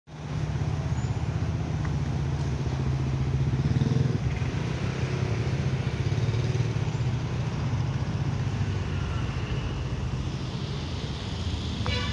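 Street traffic: motorcycle and car engines running in a steady low rumble.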